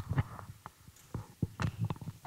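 Handheld microphone being handled and passed along the table: an irregular string of low thumps and knocks, about half a dozen in two seconds.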